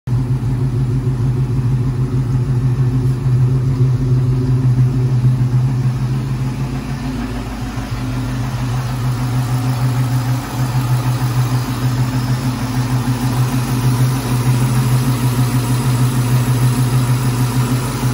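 Freshly built Gen 2 Ford Coyote 5.0 L DOHC V8, swapped into a 1995 Mustang GT, idling steadily on its first run.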